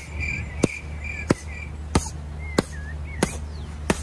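A regular series of sharp smacks, about three every two seconds, over a pulsing high chirping and a steady low hum.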